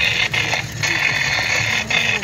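Triggered Halloween animatronic prop giving a loud, harsh mechanical rattle in stretches with brief breaks.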